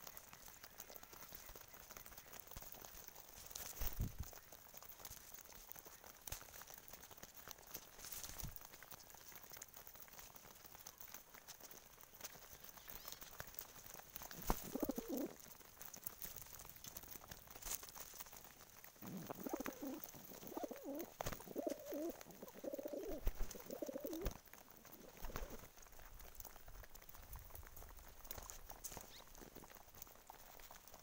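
Domestic pigeons cooing close by: one short bout about halfway through, then a longer run of coos a few seconds later. Scattered light taps come from the birds pecking at grain on the ground.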